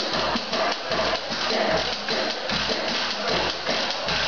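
Live blues band playing: electric guitar, bass, drums and harmonica over a steady beat.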